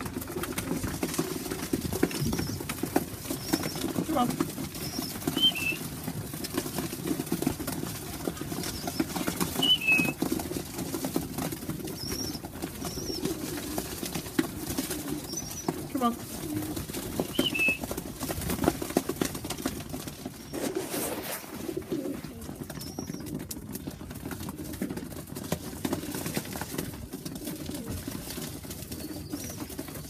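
Tippler pigeons cooing steadily in a loft, with a few short high chirps scattered through and a brief rustle about two-thirds of the way in.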